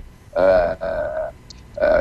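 A man's drawn-out hesitation sounds, 'ehh… ehh', two held, flat-pitched vocal fillers of about half a second each, with another starting near the end.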